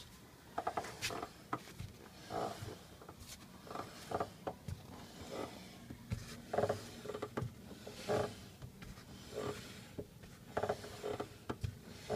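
Right front disc brake of a 1999 Honda Civic groaning as the spinning wheel is held lightly by the brakes: a repeating short groan, about one a second.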